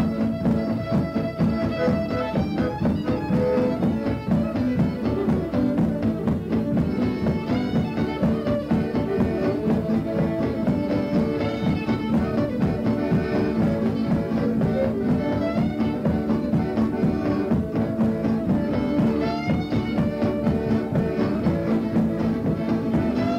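Fiddle playing a traditional dance tune backed by guitar and accordion, with a steady, even beat.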